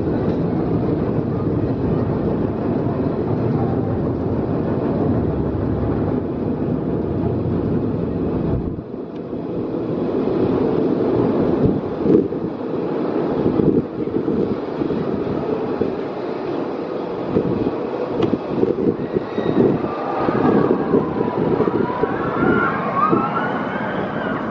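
Steel wing roller coaster train climbing its chain lift hill with a steady mechanical rumble, then clattering irregularly as it reaches the crest. Near the end, rising and falling wails, riders screaming as the train starts down the drop.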